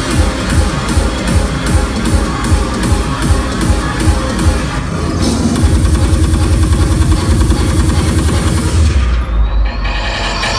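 Loud dubstep played by a DJ over a club sound system. For about five seconds there is a quick run of drum hits over falling-pitch bass, then a heavy steady bass. About nine seconds in the treble drops away and a faint rising sweep comes through.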